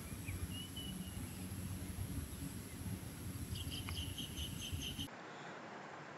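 Open-air ambience: insects buzzing steadily at a high pitch over a low rumble, with a bird chirping in a quick series of about four chirps a second in the second half. The outdoor sound cuts off suddenly about a second before the end.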